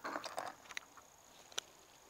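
Faint handling noise and small clicks of two crate-hinge halves being slid together by hand, with a sharper click near the middle and another about one and a half seconds in.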